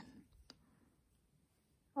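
Near silence with a single faint click about half a second in.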